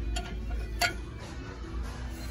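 Baseball bats clinking against each other and the wire bin as a hand sorts through them: a few sharp clicks, the loudest just under a second in. Faint background music plays underneath.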